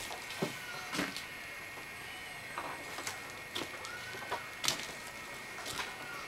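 Several short arching animal calls, each rising and falling in pitch, over a steady high-pitched tone, with scattered sharp clicks and knocks.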